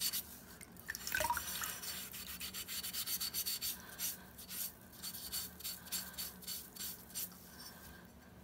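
A wet sponge scourer rubbing over a Wedgwood Jasperware box while it is rinsed, with water dripping. The rubbing comes as a quick run of short, scratchy strokes in the second half.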